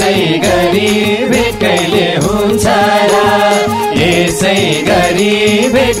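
Nepali folk song (lok geet): voices singing over a steady, regular drum beat.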